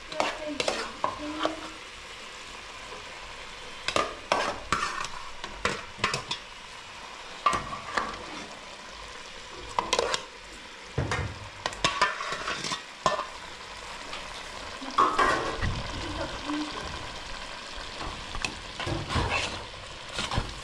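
A metal ladle scraping and knocking against a hammered steel bowl and a metal pot as food is tipped in and stirred, with a steady sizzle of food frying in the pan underneath.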